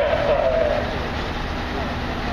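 Heavy truck or crane engine running with a steady low rumble, with people's voices over it in roughly the first half second.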